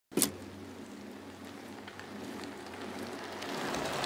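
A sharp click, then a steady hiss with faint scattered crackles and a low hum that slowly grows louder.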